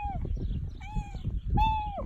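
A tabby-and-white cat meowing repeatedly: short calls less than a second apart, each falling in pitch at the end.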